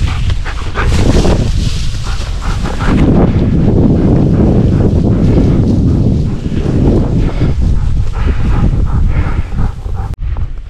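A bird dog giving short high-pitched cries over heavy wind noise on the microphone and brush rustling.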